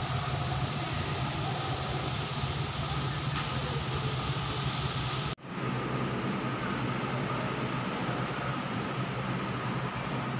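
A steady mechanical hum with an even hiss over it, like a machine running nonstop. It breaks off for an instant about five seconds in, then goes on unchanged.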